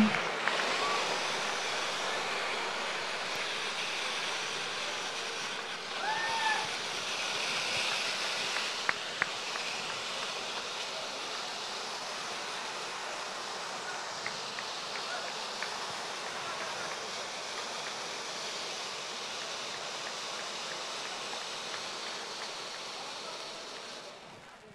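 Steady hiss-like noise of a large event hall with a faint murmur of voices, slowly fading. A short rising-and-falling tone sounds about six seconds in, and a couple of clicks come near nine seconds.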